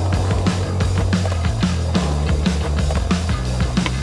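Rock music with a steady drum beat and a sustained bass line.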